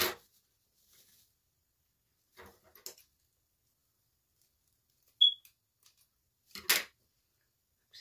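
Scissors cutting through mesh ribbon, with the ribbon rustling in the hand. A few short, sharp snips and scrapes come with quiet between them, and a brief high squeak about five seconds in.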